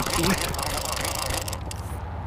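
Conventional fishing reel cranked hard against a freshly hooked sturgeon, a rough, even mechanical whirr, mixed with rubbing noise from a hand brushing close to the microphone.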